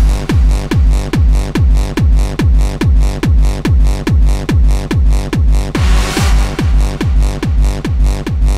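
Hardstyle dance music: a distorted kick drum hitting about two and a half times a second, each kick's pitch falling sharply, over synth layers. A hissing sweep swells up around six seconds in.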